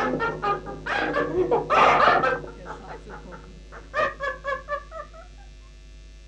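Lo-fi cassette recording of a raw black metal demo. A loud, noisy full-band passage breaks off about two seconds in. Around four seconds in comes a quick run of short, high cries that fall in pitch, then only a low hum and tape hiss.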